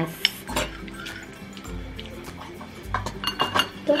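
Chopsticks and utensils clinking against ceramic bowls at a meal: scattered light clicks and taps.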